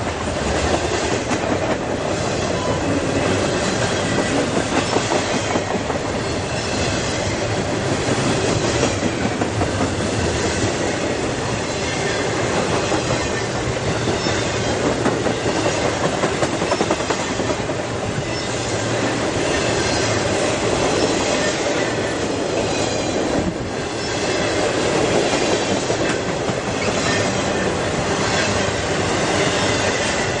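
Cars of an intermodal freight train rolling past close by: a steady rumble of steel wheels on the rails with repeated clickety-clack as the wheels cross the rail joints.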